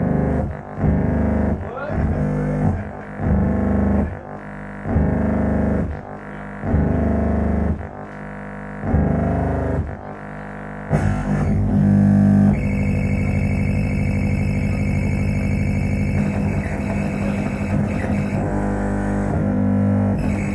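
Live experimental electronic music: a deep, dense bass drone that pulses about once a second, then merges into one continuous drone about halfway through, with a steady high whine joining it soon after.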